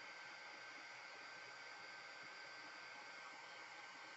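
Heat gun running steadily, its blower giving a faint even hiss with a thin steady whine, drying a coat of Mod Podge.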